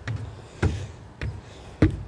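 Footsteps on wooden deck boards: four even steps a bit under two a second, the last one the loudest.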